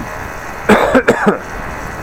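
A man coughs three times in quick succession, starting under a second in, over a steady background rush.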